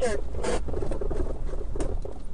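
A Jeep driving along a bumpy dirt trail, heard from inside the cab: a steady low rumble with scattered short rattles and knocks.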